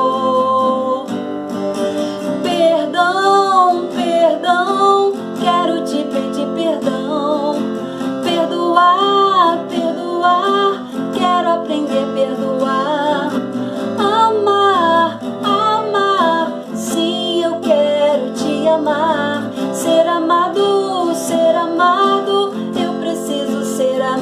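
A woman singing a slow worship song, accompanied by an acoustic guitar.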